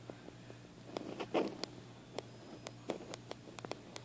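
Faint handling sounds: scattered light clicks and taps while the camera is zoomed back out, over a low steady hum, with a brief soft vocal sound about a second and a half in.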